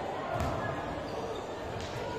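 Two sharp volleyball thumps, about a second and a half apart, ringing in a large indoor sports hall over a background of voices.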